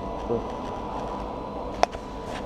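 Steady workshop background hum with a faint steady whine, and one sharp click near the end.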